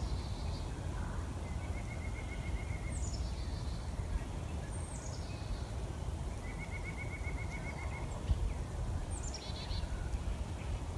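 Wild birds calling: a high call that slides down in pitch, heard several times a couple of seconds apart, and a short, lower, rapid trill twice. Under them runs a steady low rumble.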